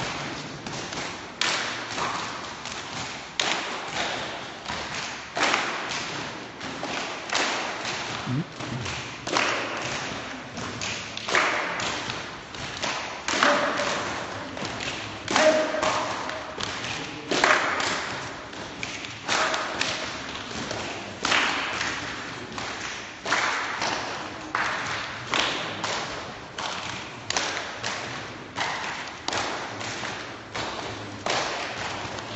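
A group of people stamping their feet in step on a concrete floor, a steady rhythm of about one thud a second with a stronger beat every other step, echoing in a large hall.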